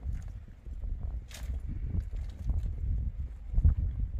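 Dry brushwood sticks clattering and scraping as they are gathered by hand on stony ground, with a couple of sharper knocks, over a steady low rumble.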